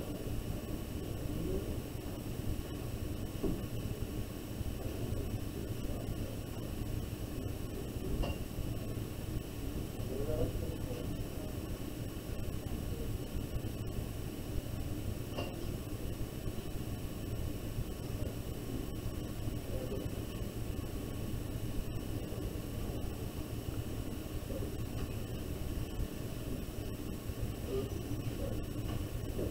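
Steady low hum and hiss of background room noise, with a few faint brief sounds, one about ten seconds in.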